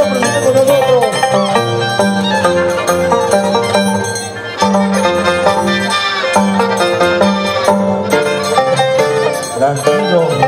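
Andean harp and violin playing a lively scissors-dance (danza de tijeras) tune, the harp's plucked bass notes pulsing under the violin melody. The music dips briefly a little after the middle, then carries on.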